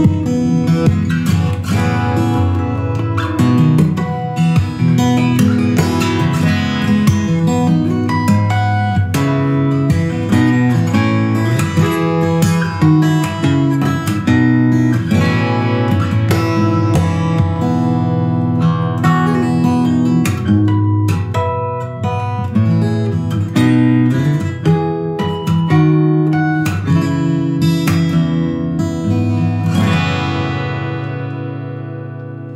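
Solo fingerstyle acoustic guitar with fast plucked runs, sharp percussive strikes and two-handed tapping on the fretboard. The playing fades near the end as the last notes ring out.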